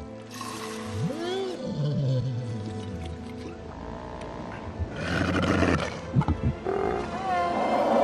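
Film sound: a thala-siren, a large fictional sea creature, gives low moaning calls that rise and fall in pitch as it is milked, over sustained orchestral score. A louder rush of noise comes about five seconds in.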